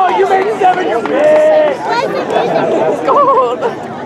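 Several spectators' voices talking and calling out over one another, with one long held call a little over a second in.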